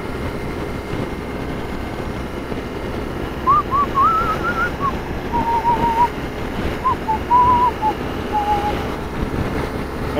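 A person whistling a short wavering tune over the steady wind and road noise of a BMW R1200RT motorcycle riding at speed; the whistling starts about three and a half seconds in and stops near the end.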